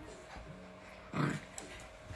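A dog on the bed making a faint, low growling sound, with a short low voiced sound a little after one second.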